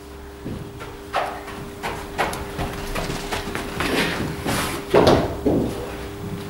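A few sharp knocks from a cricket ball being bowled and played in an indoor practice net, with footsteps on the artificial turf, over a steady low hum. The clearest knocks come about one and two seconds in and again about five seconds in.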